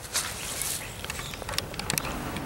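Handling noise of a camera taken off its tripod: rustling against the microphone, with a few sharp clicks near the end.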